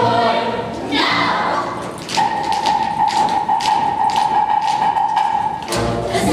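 Stage-musical accompaniment with sharp taps and thumps of dancers' feet on the stage floor. From about two seconds in, one note is held under the taps, then breaks off shortly before the end as the music moves on.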